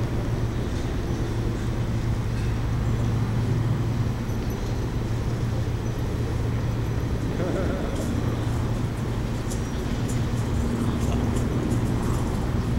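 Steady low hum of a city centre, with faint voices of people walking by.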